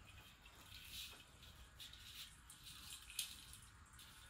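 Near silence with a few faint rustles and light clicks from an ornament being hung on the branches of an artificial Christmas tree.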